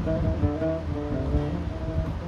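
Oud played solo: a melodic line of single plucked notes, one after another.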